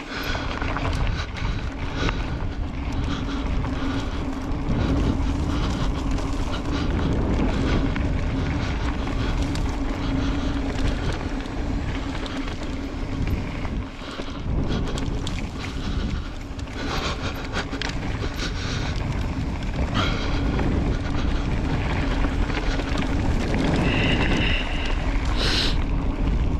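Wind buffeting the microphone as an electric mountain bike rolls over a dirt singletrack, with a steady low hum from its drive motor under pedal assist. Tyre rumble on the dirt and short knocks and rattles from the bike over bumps.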